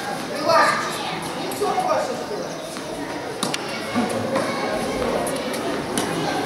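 Voices of children and adults echoing in a large hall, with a few sharp knocks; near the end a tennis ball is struck by a racket.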